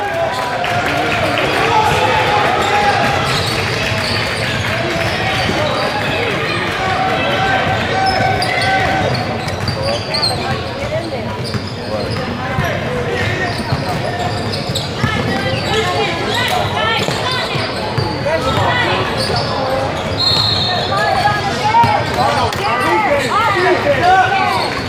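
A basketball being dribbled on a hardwood gym floor during a game, with indistinct shouting and talking from players and spectators, echoing in a large gym.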